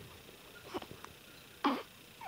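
Newborn baby fussing with short mouth sounds and small grunts while taking drops from an oral syringe. A few faint ones come just under a second in, and a louder one comes near the end.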